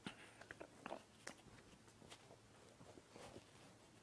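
Near silence: room tone with a few faint clicks and mouth noises.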